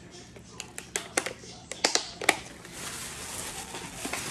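Clear plastic clamshell strawberry box being pressed and snapped shut: a series of sharp plastic clicks over the first two and a half seconds, followed by soft rustling of handled packaging.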